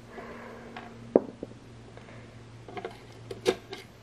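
Light clicks of small plastic and metal parts being handled in a disassembled GFCI outlet: one sharp click about a second in and a few lighter ones near the end, over a faint steady hum.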